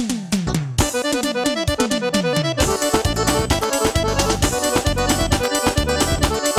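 A live forró band opening a song. Its first couple of seconds are a string of falling pitch swoops. At about two and a half seconds the full band comes in, with a driving bass-and-drum beat under an accordion-like lead from the keyboard.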